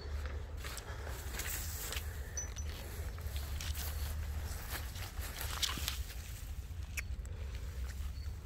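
Grass and leafy stems rustling and brushing as a person steps and crouches through a dense meadow, with a couple of sharp clicks near the end, over a steady low rumble on the microphone.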